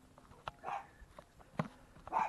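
A dog gives one short, faint bark about two-thirds of a second in, with a couple of light knocks around it.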